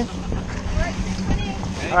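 Boat engine running steadily with a low hum, under wind noise on the microphone and water splashing.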